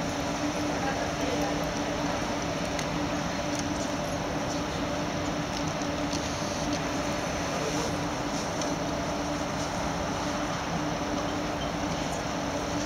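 Steady ambience of a large indoor hall: a constant hum and an even background noise with faint, indistinct voices.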